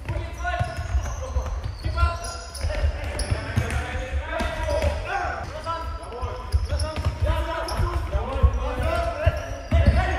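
Futsal match play in a sports hall: players shouting to each other over repeated thuds of the ball being kicked and bouncing on the hard court floor, with the hall's echo.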